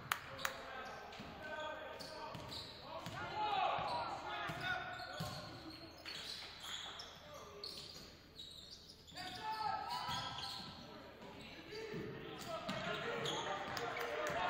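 A basketball dribbled on a hardwood gym floor, with sharp bounces about two or three a second near the start. Players' voices call out and echo in the large gym through the rest.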